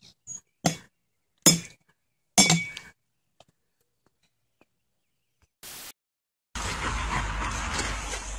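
A child's baseball bat strikes a ball three times, each a sharp clink with a short ring, less than a second apart. After a pause, a steady outdoor hiss with low wind rumble on the microphone sets in suddenly.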